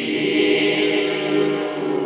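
Ambient meditation music of sustained, layered tones: held choir-like voices over ringing crystal singing bowls.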